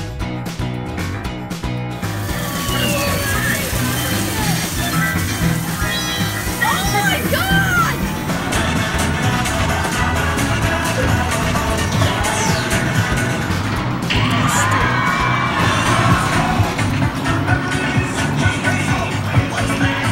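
Loud arcade din: dance music with a steady beat, mixed with voices and children's shouts.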